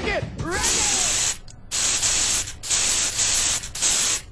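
A brief voice at the start, then the hiss of an aerosol spray-paint can in four bursts with short breaks between them.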